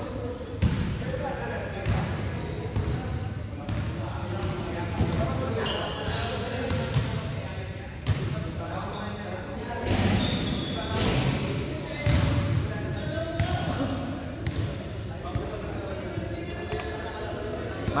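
Basketballs bouncing on an indoor gym floor: irregular thuds, a little over one a second, echoing in a large hall, over a background of indistinct chatter.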